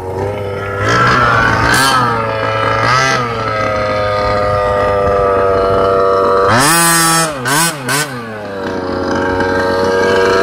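Losi 5ive-T RC truck's two-stroke gas engine idling while the truck sits still, with short throttle blips about one, two and three seconds in and a quick run of three revs around seven seconds in before it settles back to idle.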